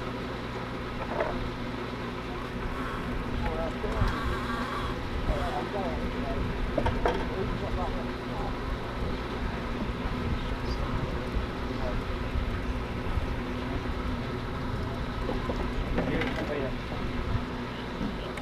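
Indistinct chatter of people talking over a steady low hum, with a few small clicks.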